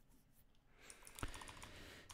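Faint computer keyboard typing, a few key clicks, starting about a second in; near silence before it.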